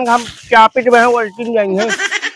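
A person's voice with a wavering pitch, in short voiced stretches.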